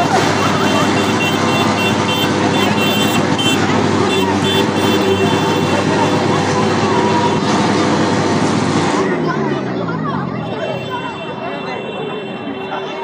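Dense, loud outdoor din of traffic and distant voices, with repeated high horn-like tones over it. It drops in level about nine seconds in.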